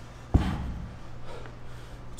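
A heavy dumbbell set down on a rubber gym floor: one sharp, deep thud about a third of a second in, fading quickly, over a steady low hum.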